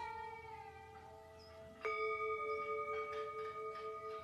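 Tibetan singing bowl struck once with its mallet about two seconds in, then ringing on in a few steady overlapping tones. Before the strike, the ring of an earlier strike is dying away.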